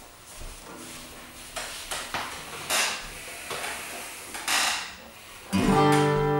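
Handling noises as an acoustic guitar is carried in and the player sits down: irregular rustles and knocks, with the strings ringing faintly now and then. About half a second before the end, the guitar is strummed and a loud, ringing first note of the tune sounds.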